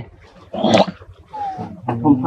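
Infant macaque whimpering: a short shrill squeal about half a second in, then a faint falling squeak, a sign of a baby monkey upset at not getting milk.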